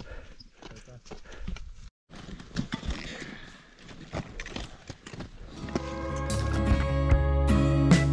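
Footsteps crunching on snow and loose rock, with irregular clicks of ski-pole tips. From about six seconds in, acoustic guitar music fades in and becomes the loudest sound.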